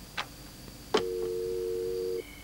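A corded desk telephone's handset is lifted with a click about a second in, and a steady two-tone dial tone follows at once.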